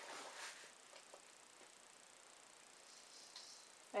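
Faint, soft scraping of a metal spoon in a plastic bowl of dry vegetable bouillon powder, mostly in the first half-second, with a couple of light ticks about a second in; otherwise near silence.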